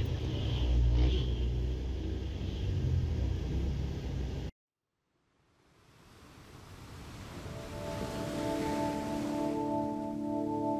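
Low rumble of motorcycle engines in street traffic, heard from inside a car, cutting off abruptly partway through. After a second of silence a rushing noise swells, and from about two-thirds of the way in it is joined by sustained, bell-like ambient music tones.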